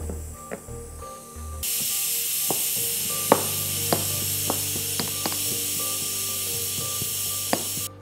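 Steady hiss of steam venting from a pressure cooker, starting about one and a half seconds in and cutting off just before the end. Over it come several sharp knocks of a marble pestle pounding ginger and garlic in a marble mortar. Background music plays underneath.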